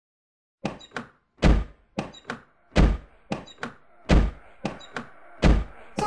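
A drum beat on its own: after a moment of silence, a deep, loud hit about every 1.3 seconds with two lighter, brighter hits in between, repeating evenly.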